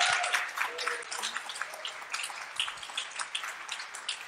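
Audience applauding, the clapping tapering off over a few seconds, with a few voices mixed in near the start.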